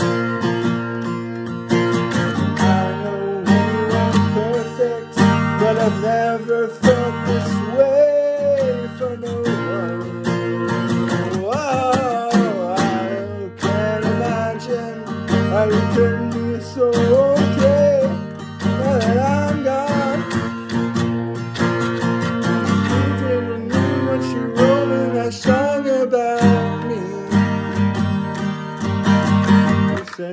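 A man singing over his own strummed acoustic guitar.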